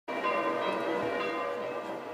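Church bells ringing in a peal: several bells' tones overlap and ring on, with fresh strikes about every half second.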